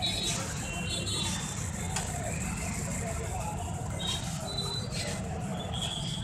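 Busy road traffic: a steady low engine rumble with a few short, high beeps about a second in and about four seconds in, and voices in the background.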